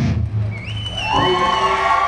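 A rock band's final chord cuts off, with a low note ringing on briefly, followed by long, held high-pitched tones that step up and down in pitch over faint crowd cheering.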